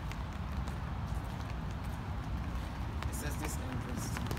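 Steady low outdoor rumble, with a few faint footsteps on stone steps about three seconds in.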